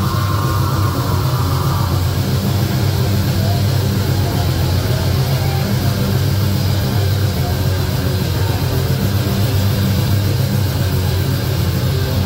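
Live heavy metal band playing: distorted electric guitars and bass with drums in a dense, steady wall of sound.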